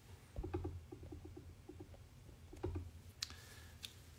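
Handling noise close to the microphone: two soft thumps with a quick run of light clicks or taps between them, then two short sharp ticks near the end.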